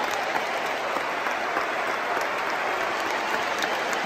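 Large stadium crowd applauding steadily, an ovation for a player being substituted off.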